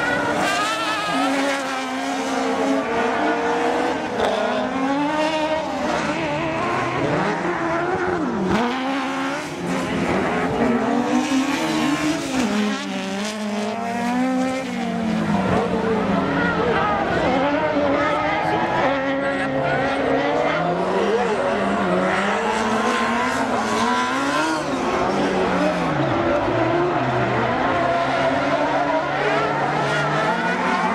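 Several autocross racing buggies' engines revving high, their pitch repeatedly rising and falling through gear changes as the cars race around the track.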